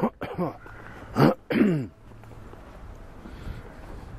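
A man clearing his throat and coughing: three short harsh bursts in the first two seconds, each dropping in pitch. After that only a faint steady street background.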